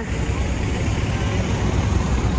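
Loud, steady city street traffic noise: a low rumble of buses and cars passing along a busy avenue.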